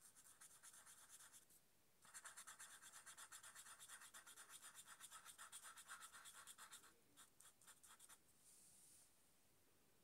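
Marker pen nib rubbing back and forth on paper in rapid, even strokes, several a second, while colouring in an area: a short run, a brief pause, then a longer run that thins out and stops about eight seconds in. Faint.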